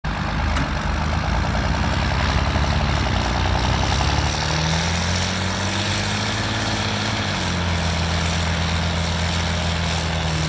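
A heavy tractor engine running steadily, its pitch shifting about four seconds in and again about seven seconds in.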